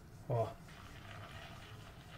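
Stuffed chicken breast roll set into hot olive oil and butter, frying with a faint, steady sizzle from about half a second in.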